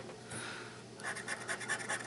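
A small metal scratcher tool scraping the coating off a scratch-off lottery ticket in quick, short strokes. The strokes come thicker and faster from about a second in.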